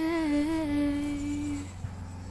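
A woman's voice holds one long wordless note in 'light language' vocalising, wavering in pitch at first, then settling a little lower and fading out shortly before the end.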